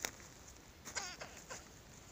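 An animal's short, wavering cry that falls in pitch, about a second in, with a sharp click right at the start.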